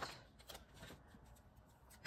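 Near silence with faint rustles and light clicks of paper and sticker sheets being handled, most of them in the first second.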